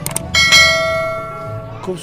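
Bell chime sound effect of a YouTube subscribe-button animation: quick clicks, then a single bright bell ding about a third of a second in that rings out and fades over about a second and a half.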